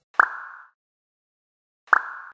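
Two cartoon plop sound effects: one a fifth of a second in and another right at the end, each a quick pop with a short ringing tail.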